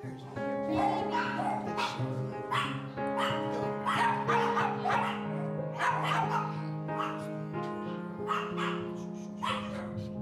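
A dog barking and yipping in short repeated bursts over background music with long held notes.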